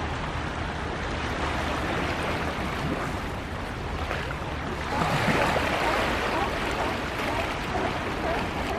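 Water sloshing and splashing against jetty rocks as a sea lion rolls and scratches at the surface. The splashing grows louder for a second or two about five seconds in.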